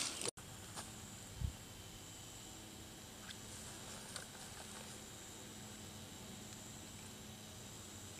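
Faint woodland ambience: a steady high thin tone, a few small clicks, and a soft low thump about a second and a half in.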